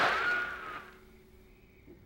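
A sound effect: a short noisy rush with a whistling tone that rises and then slowly falls away, dying out within about a second. It is followed by near quiet as the guitar music pauses.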